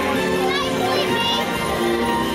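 Parade music playing loudly over loudspeakers, mixed with crowd chatter and children's voices along the route.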